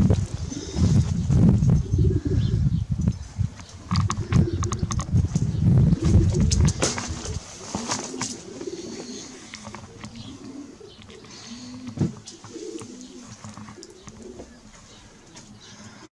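Pigeons cooing repeatedly, under a heavy low rumble that fills roughly the first seven seconds and then drops away. A single sharp click sounds about three-quarters of the way through.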